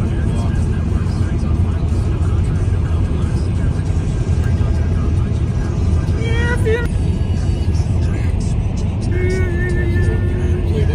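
Steady low road and engine rumble inside a car cruising at highway speed, with short snatches of a voice about six seconds in and near the end.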